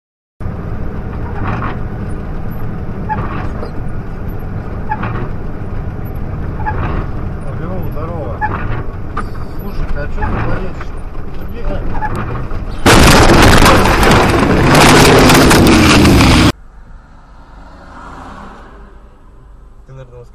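Dashcam sound from inside a moving vehicle: steady road and engine noise, with a soft sound repeating about every two seconds. Later comes about four seconds of very loud, distorted noise that stops suddenly, followed by quieter traffic noise.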